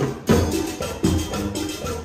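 A live marching band playing upbeat Latin dance music: drums and percussion beating a steady rhythm under sustained brass notes, with sousaphones in the band.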